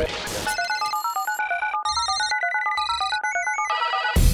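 Mobile phone ringtone: a fast electronic melody of short beeping notes stepping up and down in pitch, starting about half a second in.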